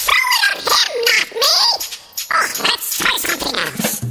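Voices pitched up an octave to a chipmunk-like squeak, in short sliding vocal sounds with the bass and beat dropped out beneath them.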